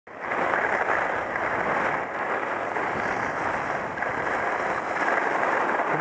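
Steady rushing noise of wind over a helmet-mounted camera mixed with skis sliding and scraping on packed snow, as the wearer skis downhill.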